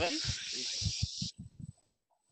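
A steady hiss lasting just over a second that cuts off suddenly, with faint low pulses beneath it, then silence.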